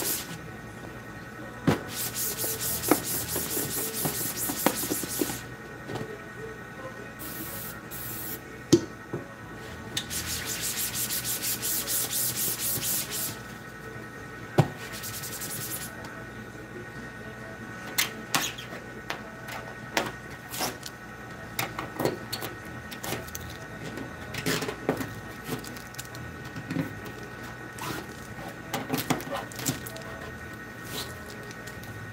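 Cloth rag scrubbing plastisol ink out of a screen-printing screen in quick rhythmic strokes, with a steady spray of ink remover hissing for about three seconds near the middle. After that come lighter wiping and scattered taps and knocks against the screen frame.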